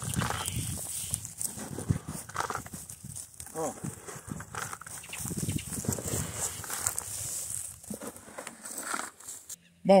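Boots crunching on dry straw and soil, with the rustle and patter of composted chicken-litter manure tossed by hand from a bucket into a furrow; irregular, no steady rhythm.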